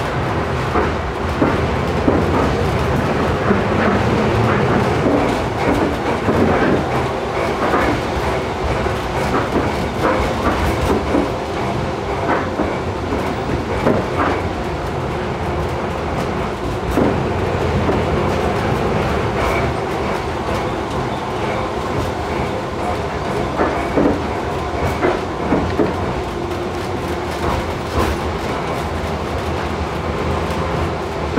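Tram running along its line, heard from the driver's cab: a steady rumble of motor and wheels on rail, broken by irregular clicks and knocks as the wheels pass over rail joints.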